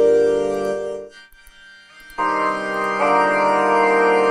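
Reason's BV512 vocoder with its Hold button engaged, freezing the last vocal sound onto a Europa synth chord: a steady held chord that fades out about a second in, then a second held chord starts just past two seconds and sustains.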